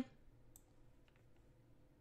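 Near silence, broken by a few faint clicks.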